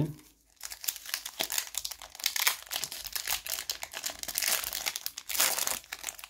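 Foil wrapper of a Pokémon TCG booster pack crinkling as it is handled and torn open, a dense crackle starting about half a second in and loudest near the end.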